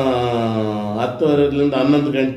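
A man's voice speaking with long, drawn-out vowels that slowly fall in pitch, two held stretches about a second each.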